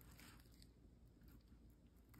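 Near silence, with faint scratchy ticks from a scalpel blade drawing a shallow cut through fetal pig skin.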